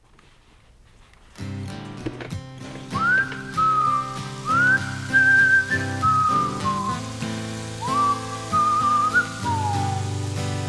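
About a second and a half of near silence, then the intro of an acoustic country song starts: acoustic guitar with a whistled melody, each phrase sliding up into a held note and falling away.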